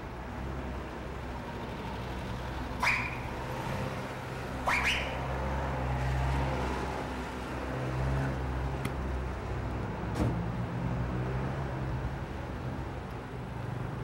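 Steady low street rumble, like traffic going by, with a few short sharp clicks or knocks spread through it, the two loudest about three and five seconds in.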